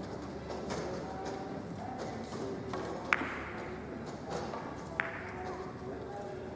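Carom billiard balls colliding on a three-cushion table: a sharp, ringing click about three seconds in and a second one about five seconds in, among fainter knocks of the cue and the rolling balls, over low background chatter in the hall.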